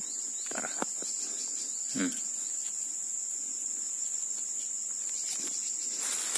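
Insects giving a steady, high-pitched drone, with a few faint handling knocks about half a second in.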